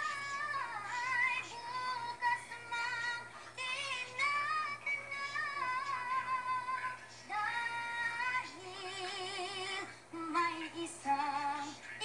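Music: a high female voice singing a melody in held, wavering notes.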